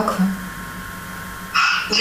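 A woman's voice through a smartphone's loudspeaker during a phone call, faint and indistinct at first, then a louder burst about a second and a half in.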